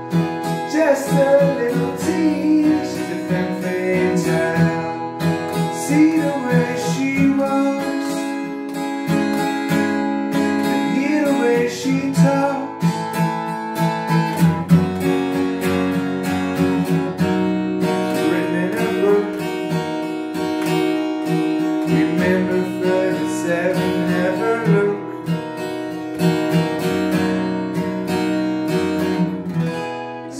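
Steel-string acoustic guitar capoed at the second fret, strummed steadily through a chord progression that moves from D to E major.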